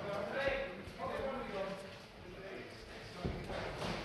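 Voices calling out around a boxing ring, not clear enough to make out as words, with a couple of sharp knocks near the end, typical of boxers' feet or gloves.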